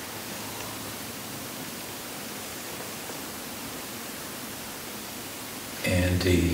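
Steady hiss of background noise from the microphone and room, even and unchanging, with a man's voice starting up right at the end.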